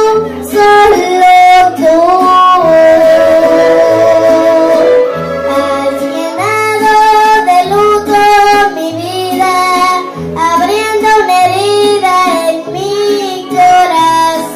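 A young girl singing into a microphone over a karaoke backing track, her voice holding and sliding between notes above a steady bass line.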